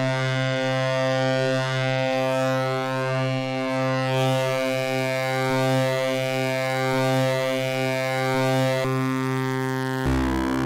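Cosmotronic Vortex complex oscillator sounding a sustained low drone with many overtones. Its upper overtones ripple and sweep as the wavefolder and filter sliders are moved, and the tone changes near the end.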